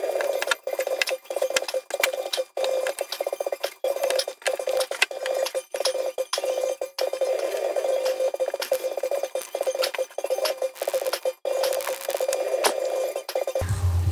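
Fingers pressing and rubbing a glued patch against a plastic gas tank, smoothing it down to squish out trapped air. The friction makes a continuous crackly rubbing with a steady mid-pitched buzz, broken by a few short pauses.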